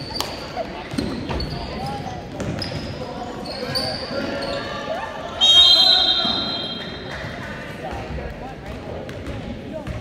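Basketball game on a hardwood gym floor: a ball bouncing, sneakers squeaking and background chatter. About five and a half seconds in, a referee's whistle gives one long blast of about a second and a half, stopping play for a held ball with players tangled on the floor.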